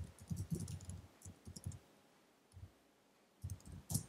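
Typing on a computer keyboard: a quick run of keystrokes for the first couple of seconds, a pause, then another short burst near the end.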